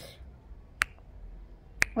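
Two short, sharp clicks about a second apart, the second just before speech resumes.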